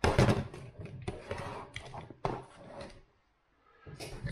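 Handling noise: rustling and several knocks as a camcorder is handled on a desk close to the microphone, stopping about three seconds in.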